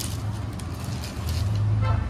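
Plastic packaging and cotton cloth rustling as they are handled, over a steady low rumble that swells louder about one and a half seconds in.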